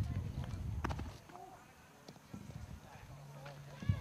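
Faint, distant voices over a low rumble, with a single sharp click just before the one-second mark and a steady low hum in the last second.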